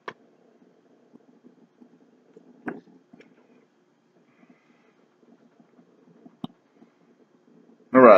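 A man swallowing a sip from a drink can, then a few soft mouth clicks and smacks as he tastes it, over a faint steady low hum.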